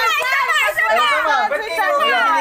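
Several women talking over one another in excited, high-pitched chatter, no single voice clear.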